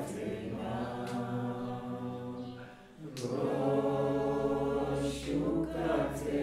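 Choral music on the soundtrack: voices singing long held chords. One phrase fades out a little before the middle, and a new one comes in about three seconds in.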